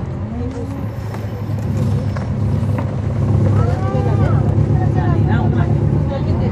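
Cummins ISL9 diesel engine of a NABI 416.15 transit bus, heard from inside the bus, running with a steady low drone that grows louder about halfway through.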